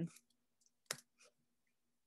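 A single sharp click at the computer about a second in, from working the mouse or keyboard, over a faint steady hum.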